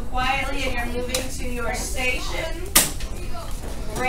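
Children's voices chattering over one another in a classroom, with no clear words, and one sharp knock a little under three seconds in.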